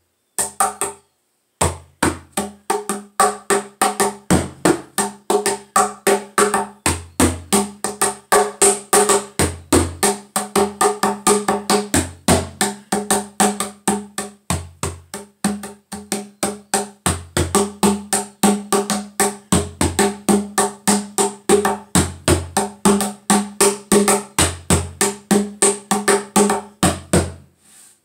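Homemade Cuban-style bass-tone rumba cajon, its wooden box rebuilt with a shortened sound chamber and a larger sound port, played with bare hands. Quick strokes of about four a second alternate deep bass tones with higher slaps in a rumba rhythm. After a brief pause about a second in, it plays steadily and stops just before the end.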